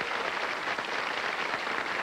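Audience applauding: many hands clapping in a steady, even wash.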